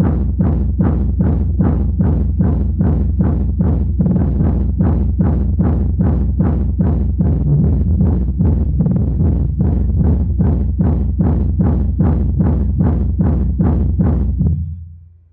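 Bass-heavy music played very loud through an Eros Target Bass 4K 15-inch subwoofer driven to about 4,100 W of music power. It has continuous deep bass under a fast, steady beat, and is loud enough to read about 135.9 dB on the meter.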